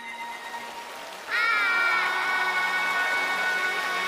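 Audience applauding and cheering. About a second and a half in, a loud, long high-pitched note comes in over the applause and is held steady.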